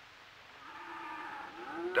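A cow mooing: one long drawn-out call that fades in about half a second in and grows louder toward the end.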